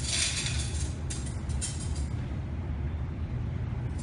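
Cutlery and tableware being handled and laid on a table: a few short rustling, scraping bursts, the strongest at the start, over a steady low hum.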